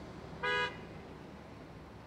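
A single short car horn toot, about a quarter of a second long and steady in pitch, over a faint low street rumble.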